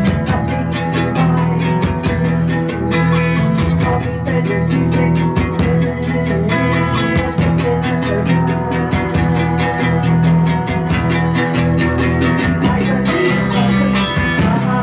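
Live rock band playing loud: electric guitars, bass and a drum kit keeping a steady beat.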